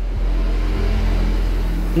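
A steady low rumble of background noise, with no distinct event standing out.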